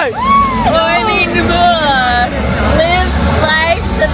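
A woman's voice with long, sliding vocal calls, more drawn-out than ordinary talk, over a steady low vehicle rumble.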